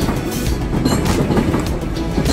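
A Sydney double-deck electric suburban train running past below, a steady loud rail noise with scattered knocks, under background music.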